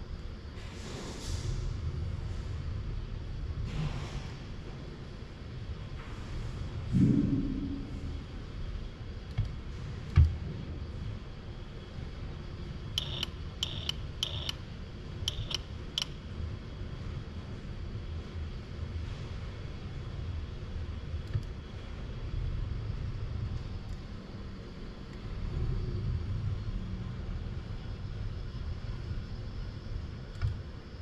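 Low steady machine rumble while a teleoperated robot arm moves in a lab, with scattered clicks and a knock about seven seconds in. About halfway through comes a quick run of about six short, sharp, high-pitched ticks.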